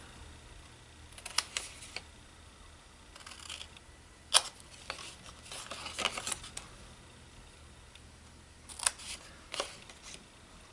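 Small craft scissors snipping through card stock: a scattering of short, sharp snips, the loudest a little before halfway.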